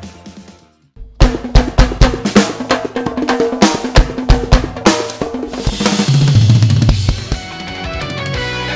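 Drum kit played with sticks: after a short gap about a second in, a run of sharp hits on snare, toms and bass drum, building into a fill with a wash of cymbals and low tom notes near the end.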